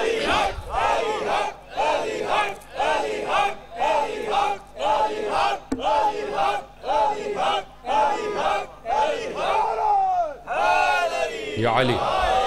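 A crowd of men chanting a short slogan in unison, about one shout a second, then one longer falling shout near the end.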